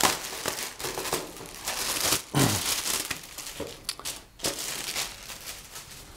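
Clear plastic wrapping crinkling and rustling as it is peeled and pulled off a rugged tablet case, uneven and loudest at the start.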